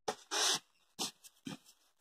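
Sheets of paper being handled and laid down: a few short, soft rustles and slides, the longest about half a second in.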